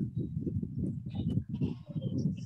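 Low, irregular crackling and rumbling noise over the video-call audio, coming through a participant's open microphone.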